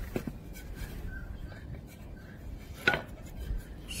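Wooden sticks knocking on stone paving: a couple of light knocks at the start and one sharper knock about three seconds in.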